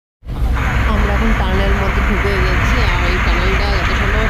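Steady road and engine rumble heard from inside a moving car, starting after a brief silence, with people's voices talking over it.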